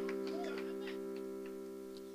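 Background instrumental music in a pause of speech: a held keyboard chord slowly fading away, with faint ticks.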